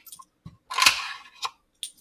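Coins being picked out of a cash drawer's coin tray: a few light clicks and one short scrape just under a second in.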